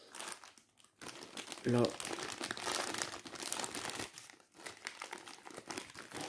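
Clear plastic bag of puzzle pieces crinkling steadily as it is grabbed and lifted out of a box, starting about a second in.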